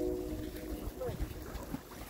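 Wind rumbling on the microphone at a shoreline. A distant multi-tone horn chord cuts off just after the start.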